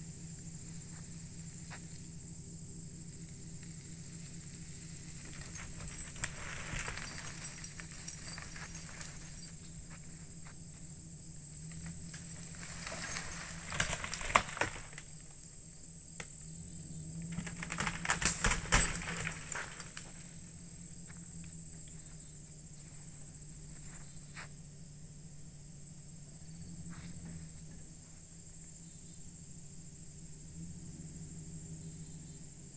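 Insects trilling with a steady high note over a low, even engine hum from a pickup truck idling. Several louder swells of rustling noise with clicks come and go, the strongest about 13 to 15 and 17 to 20 seconds in.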